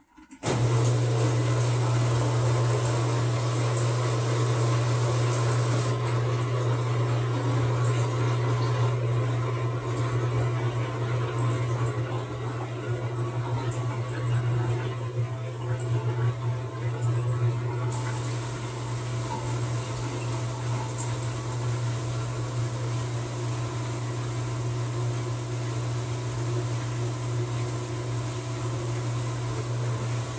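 TCL TWF75-P60 direct-drive inverter front-load washing machine running, its drum turning the laundry with a steady low hum. The sound starts abruptly about half a second in and eases a little after the first dozen seconds.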